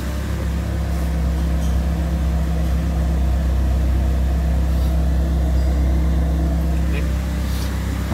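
Peugeot 206's four-cylinder engine idling steadily at about 1,000 rpm, running evenly now that its shorted engine wiring harness has been repaired.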